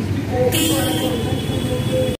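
Voices and crowd noise at an outdoor gathering, with a steady held tone coming in about half a second in.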